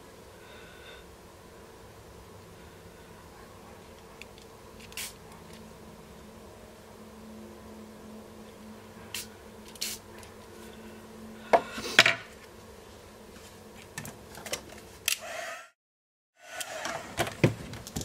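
Scattered small taps and clicks from handling things on a craft desk over a faint steady hum, the loudest pair about two-thirds of the way through. The sound cuts out completely for under a second near the end.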